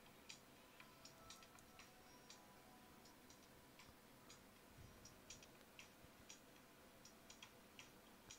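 Near silence, with faint irregular clicks from a computer keyboard and mouse, a few a second.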